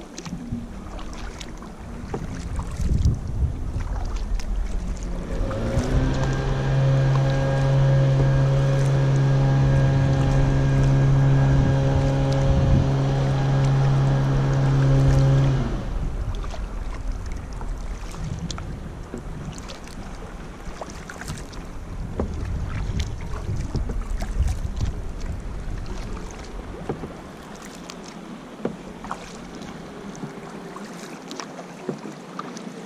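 Kayak paddle strokes: the blades dipping and splashing, water dripping and lapping at the hull, with some wind on the microphone. About five seconds in, a steady pitched drone slides up into place, holds for about ten seconds as the loudest sound, then cuts off suddenly.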